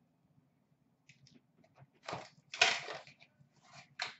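Short rustling scrapes of cardboard boxes being handled: two louder ones about halfway through, then a few fainter ones.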